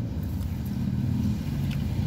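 A car engine running with a steady low hum, heard from inside a car's cabin.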